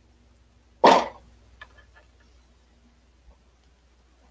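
A single short, loud vocal burst about a second in, against a quiet room.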